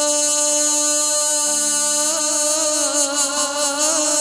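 Vietnamese chầu văn ritual music for a hầu đồng ceremony: long sung notes held over a steady accompaniment, the voice wavering with vibrato in the second half.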